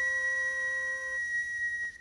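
A conductor's whistle blown in one long, steady high note that cuts off just before the end.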